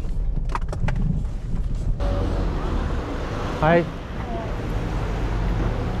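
Low rumble of a Mercedes police car driving, heard from inside the cabin, then, after an abrupt cut about two seconds in, steady outdoor street and traffic noise.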